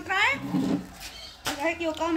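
People's voices talking, with one sharp click about one and a half seconds in.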